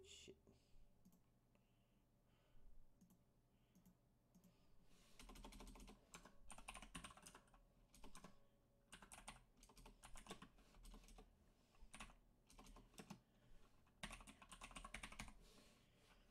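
Faint computer keyboard typing in irregular bursts of keystrokes, mostly from about five seconds in.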